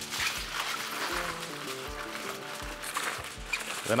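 Aluminium foil crinkling as gloved hands handle and gather it, over background music with held notes and a soft low beat.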